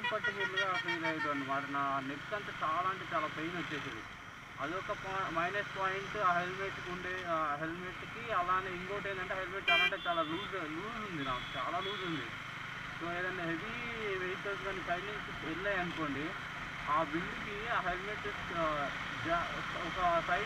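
A man talking through most of the stretch over the steady running noise of a Bajaj Dominar 400 motorcycle being ridden at road speed, with a short sharp click about halfway through.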